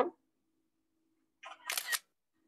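iPad screenshot shutter sound: a short simulated camera-shutter click near the end, over a faint steady hum.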